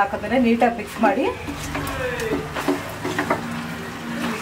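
Chicken pieces in masala being stirred and turned in a non-stick pan, with a voice talking over it.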